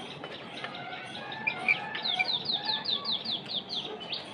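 Small birds chirping in the background: a few short, high chirps, then about two seconds in a quick run of about eight descending notes.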